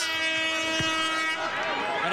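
A horn blast signalling the kick-off: one steady, held tone that cuts off after about a second and a half.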